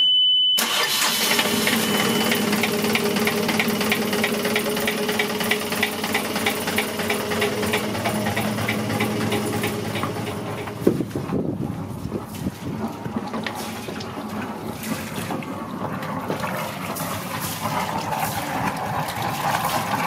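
Yanmar 40 hp marine diesel starting from cold after preheating: a high steady beep, then the engine fires about half a second in and settles into a steady clattering idle. The beep fades out a couple of seconds later.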